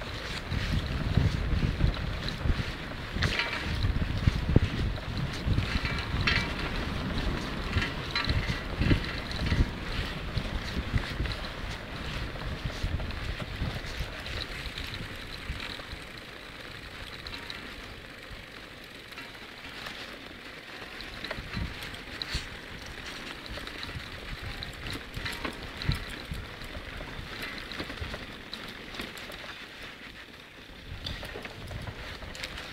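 Wind buffeting the microphone of a moving outdoor camera: a gusty rumble that is strong for the first dozen seconds, then eases to a quieter, steadier rush, with a few faint clicks.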